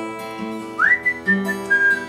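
Fingerpicked acoustic guitar ringing on a G chord, joined about a second in by a man whistling a melody that swoops up into a few held high notes.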